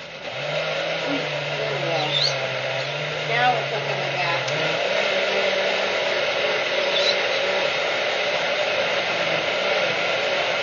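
Countertop blender motor running steadily, blending a thick sauce of chilies, chocolate and broth. It starts just after the beginning, and a lower hum in it drops away about halfway through. A few short bird chirps sound over it.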